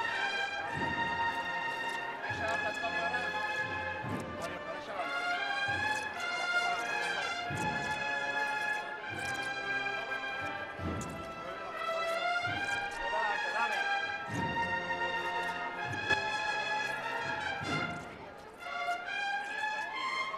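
Brass band playing a slow processional march, with sustained brass chords and occasional low drum beats.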